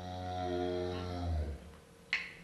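One long, low, moo-like tone held at a steady pitch, which sags and fades about one and a half seconds in.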